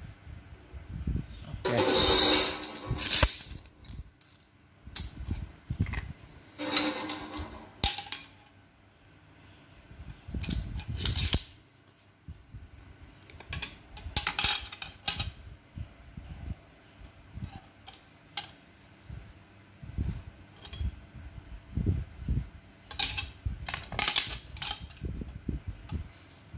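A pair of steel F-clamps with wooden handles being handled, giving irregular metal-on-metal clinks and knocks, with short louder clattering bursts about two, seven and eleven seconds in, around fourteen seconds, and again near the end.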